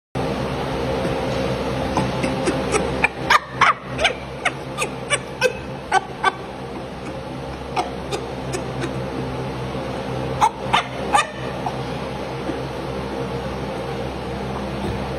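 A chimpanzee's excited food grunts while eating: a rapid series of short, high-pitched calls between about two and six seconds in, then a few more around ten to eleven seconds. A steady hum sits underneath.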